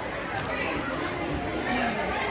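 Crowd chatter in an auditorium: many people talking at once, with no single voice standing out.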